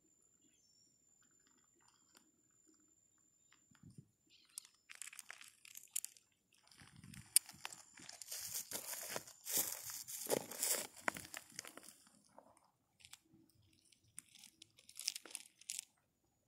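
Loose gravel crunching and rattling in irregular clusters, starting about four to five seconds in and loudest around the middle, with a shorter burst near the end.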